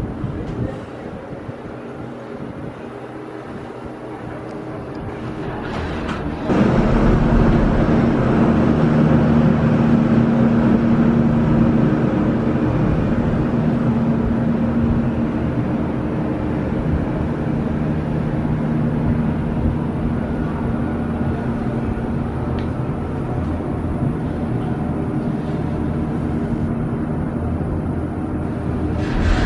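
Steady running noise of a Disney Skyliner gondola cabin travelling along its cable, heard from inside the cabin. It gets suddenly louder about six and a half seconds in, with a low steady hum under the noise.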